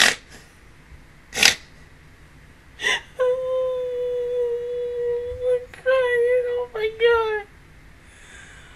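A woman's high-pitched squealing whimper: three short sharp breathy gasps, then one long held whine of about two and a half seconds that breaks into shorter wavering whimpers.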